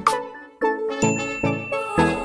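Short outro jingle of sharply struck, decaying notes about every half second, with a bright ding sound effect entering about a second in as the bell icon of a subscribe animation is clicked.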